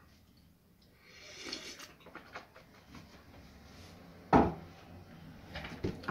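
Quiet sounds of someone drinking from a stainless steel travel mug, then a single sharp knock about four seconds in as the mug is set down on a wooden desk.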